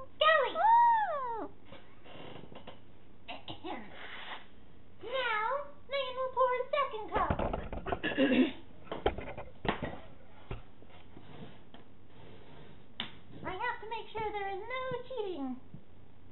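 High, squeaky wordless voice noises in short bursts, the pitch sweeping up and down, as if voicing toy raccoons. About 7 to 9 seconds in comes a short rustling clatter of handling noise.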